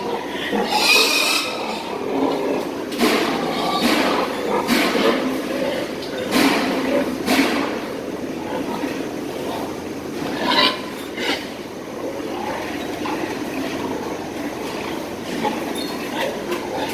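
Steel gestation crates clanking and rattling in a string of sharp metallic knocks as pregnant sows are driven out of them, over a steady din in the pig barn.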